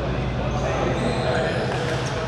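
Badminton racket strikes on a shuttlecock during a rally, with voices and a steady low hum in the large hall.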